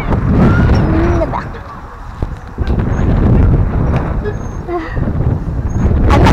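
Wind buffeting the microphone of a camera swinging on a rope nest swing, a low rumble that swells and dips with the swing, with a child's high voice calling out over it.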